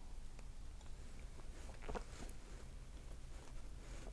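A man sipping beer from a glass and swallowing: a few faint, soft mouth clicks and gulps over a low steady room hum.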